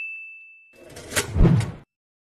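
A bright, single-pitched 'ding' notification sound effect, struck just before and ringing down over the first second. It is followed about a second in by a louder, noisy sound-effect swell that ends abruptly before the close.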